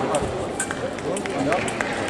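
Background chatter of several voices, with a few light sharp clicks.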